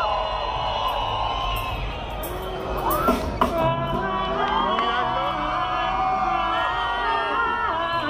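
Concert crowd cheering and whooping at a live reggae show, with a loud burst of shouts about three seconds in, as the music for the song's intro comes in with sustained chords.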